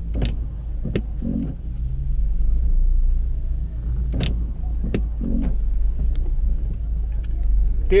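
Busy street market ambience: a steady low rumble under short snatches of passers-by's voices, with a few sharp knocks scattered through.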